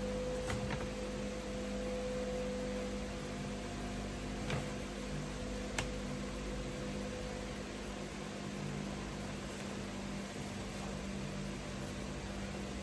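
Steady low hum and hiss of room tone, with two faint clicks a little over a second apart near the middle.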